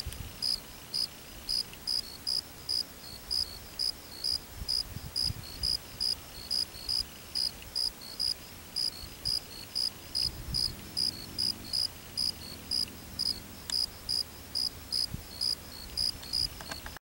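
A cricket chirping steadily, about three short high chirps a second.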